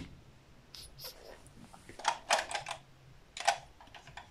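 Plastic diamond-painting pens clicking and knocking against each other as they are picked through: a scatter of light, sharp clicks, several in quick succession about two seconds in.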